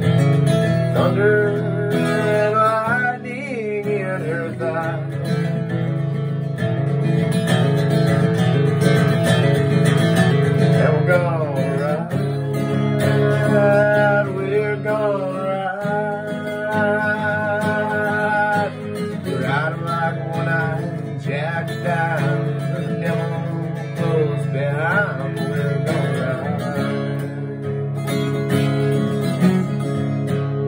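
Acoustic guitar strummed in an instrumental break of a country song: steady chords with a wavering melody line over them, no sung words.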